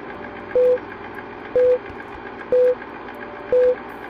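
Old-film countdown leader sound effect: a short beep about once a second, four in all, over a steady crackling hiss with faint clicks.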